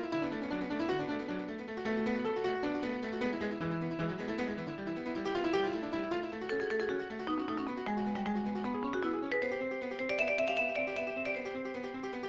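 Guitar playing a fast single-note jazz solo, runs of quick notes over a changing chord accompaniment.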